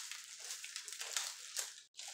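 Faint crinkling and rustling of a plastic-wrapped pack of party cups and nylon shorts being handled. The sound cuts out to silence for an instant near the end.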